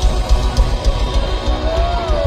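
Live thrash metal band playing: distorted electric guitars and bass over rapid, pounding kick drums. A sustained high note slides in near the end.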